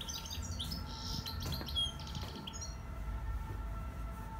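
Bird chirps and twitters, quick high notes in rapid series, stopping about two and a half seconds in, over a steady low rumble.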